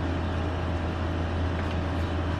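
A steady low hum with a thin constant whine above it and an even hiss, unchanging throughout.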